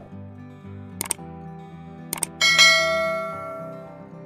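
Subscribe-button animation sound effects over soft background music: a quick double click about a second in, another double click just after two seconds, then a bright bell ding that rings out and fades.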